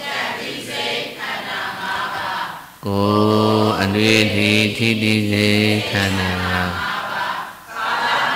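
Buddhist devotional chanting by a group of voices in unison. About three seconds in, a single low voice, louder than the group, takes over on long held notes for about four seconds, then the group chanting returns.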